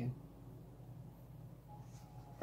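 Quiet room tone with a faint steady low hum, just after a spoken phrase ends at the very start.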